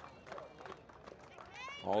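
Faint, low background ambience with no clear event, then a man's commentary voice starts near the end.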